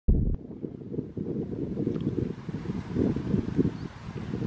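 Wind buffeting the camera's microphone: an uneven, gusting low rumble, with a brief louder low thump right at the start.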